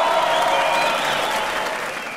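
Large audience applauding, with a few voices calling out over the clapping; the applause fades down near the end.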